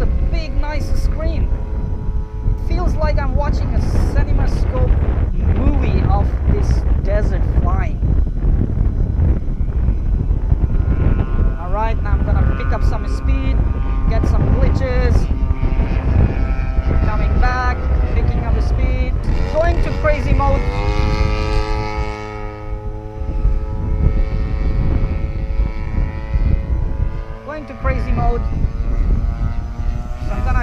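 FPV racing quadcopter's electric motors and propellers whining, the pitch rising and falling quickly with throttle changes over a rush of wind. About twenty seconds in the whine climbs and holds at a steady pitch for several seconds.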